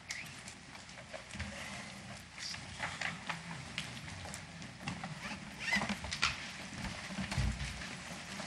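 Room bustle of people moving about a hearing room: scattered footsteps, chair and table knocks, and rustling at an irregular pace over a low background hum.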